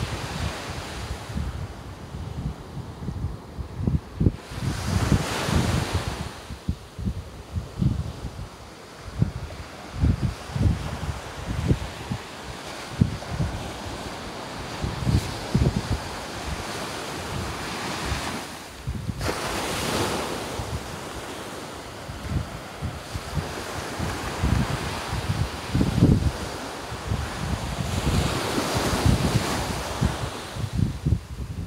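Ocean surf washing on the beach with wind gusting on the microphone, the hiss of the surf swelling louder about five, twenty and twenty-nine seconds in.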